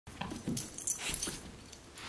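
Two small dogs stirring while waiting for a treat held above them: a few brief dog sounds mixed with short jingles and rustles.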